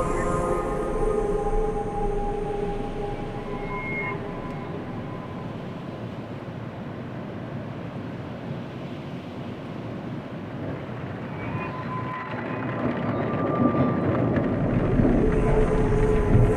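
Dark ambient horror synth music. Sustained drone tones fade away over the first few seconds, leaving a low rumbling wash, and then swell back in, growing louder toward the end.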